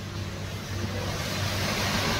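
A motor vehicle approaching along the road, its engine and road noise growing steadily louder.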